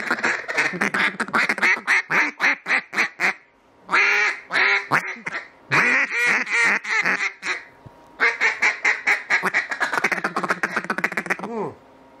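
Duck calls blown by mouth, imitating a hen mallard: fast runs of short clucking notes (a feeder chuckle) near the start and again near the end, with a few louder, drawn-out quacks in the middle.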